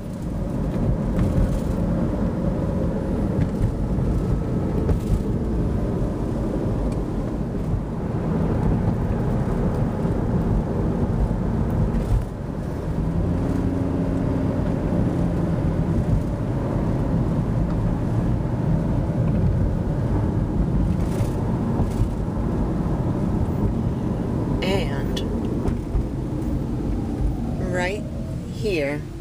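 A car driving along a road, heard from inside: steady road and engine noise that comes up suddenly at the start and then holds.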